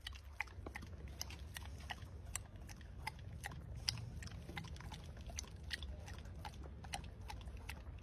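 Yellow Labrador licking melting ice cream from a cup held to its mouth: quick wet licks and tongue smacks, several a second and uneven, over a low steady rumble.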